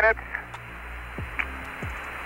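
Steady radio hiss on the Apollo air-to-ground voice loop in the gap between transmissions, after the last syllable of an astronaut's call at the start. Low background music with soft falling low notes runs underneath.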